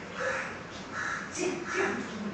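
A crow cawing three times, short harsh calls about two-thirds of a second apart.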